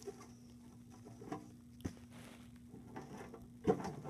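Faint handling noises of twigs being moved about in a plastic enclosure: light scratches and taps, one sharp click a little before the middle and a louder knock near the end. A steady low hum runs underneath.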